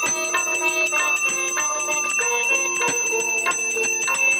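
Bells ringing continuously and rapidly for a Hindu aarti, with sustained high ringing tones, over a melodic instrumental line.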